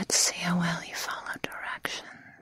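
A woman whispering close to the microphone, breathy and unvoiced, with a few short sharp clicks between the words.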